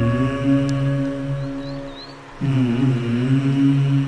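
A male voice chanting a mantra in long held notes. The chant breaks off briefly a little over two seconds in, for a breath, then resumes.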